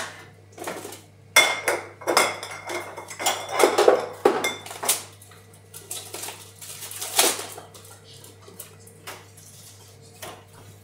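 Crockery and metal cutlery clattering and clinking as dishes are handled at a dishwasher, a busy run of knocks and ringing clinks in the first half with a last loud clink about seven seconds in, then only a few light taps.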